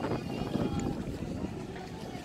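Wind buffeting the microphone, a low, uneven rumble, with faint voices of people around.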